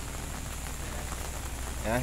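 Steady rain falling, an even hiss, with a low steady hum underneath.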